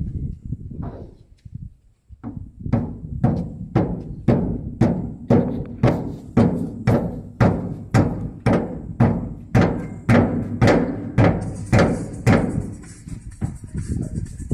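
Hammer blows on the steel locking handle of a shipping-container door, a steady run of about two strikes a second that starts about two seconds in and stops near the end.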